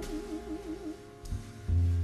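A woman's singing voice holding the last note of a phrase with a wide, even vibrato, dying away about a second in. The accompaniment carries on beneath, with low bass notes entering twice near the end.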